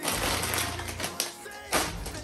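Chip bag crinkling as it is handled. There is a dense rustle for about a second, then a second short crackle near the end, over background music.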